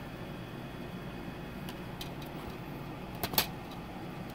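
A plastic DVD case being handled: a few light clicks, then one sharp snap a little after three seconds in, over a steady low hum.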